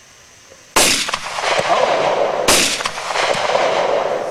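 Two rifle shots about a second and three-quarters apart, each followed by a long rolling echo that fills the gap after it.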